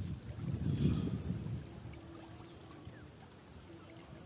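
Small waves lapping against a muddy bank, louder with a low rumble for the first second and a half, then a faint steady wash.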